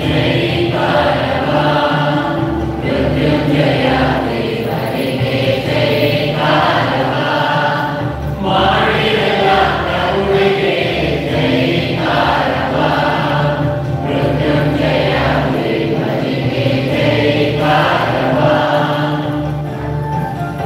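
Church choir singing a hymn, in sung phrases a few seconds long with short breaks between them.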